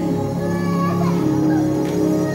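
Mixed choir singing a sacred song, the voices holding sustained notes.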